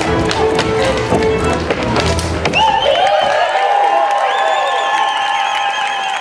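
Cimbalom band playing Slovácko verbuňk dance music, with sharp slaps and stamps of the dancers' hands on their boots. About two and a half seconds in, the bass stops and the band holds a long final note.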